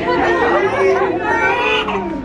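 Several people's voices talking over one another.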